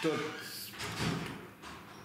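An elderly man's voice speaking Romanian haltingly: a short word at the start, then a brief breathy noise about half a second in.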